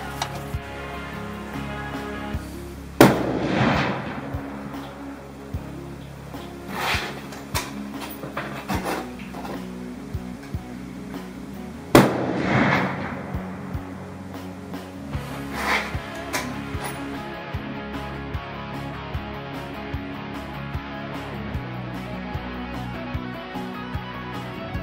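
Rifle shots from a .30-06 Sako 85 Finnlight over background music: two loud sharp reports, about three seconds in and again about twelve seconds in, each with a short echo, and a few fainter reports between them.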